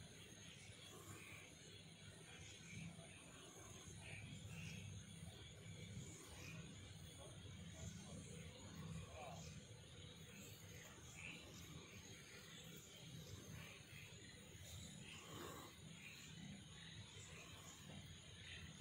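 Near silence: a faint, steady low rumble of outdoor night ambience, with faint, indistinct murmurs now and then.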